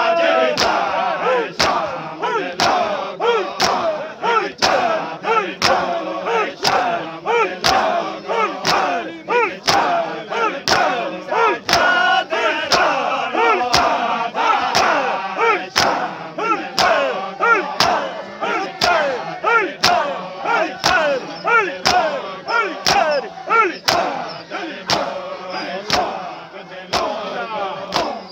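A group of men performing matam, striking their bare chests with open palms in unison about twice a second. Between the strikes they chant a noha together, in time with the beats.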